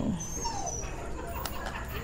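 A dog whimpering softly: a couple of short, falling whines in the first second, with a small click about one and a half seconds in.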